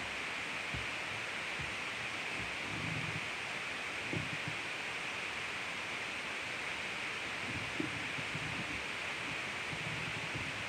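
Steady background hiss, strongest in a mid-high band, with a few faint low knocks about four seconds in and again near eight seconds.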